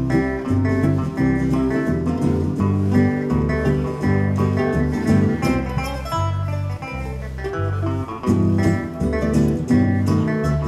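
Live country band playing an instrumental tune, with picked acoustic guitar over a steady, rhythmic bass line.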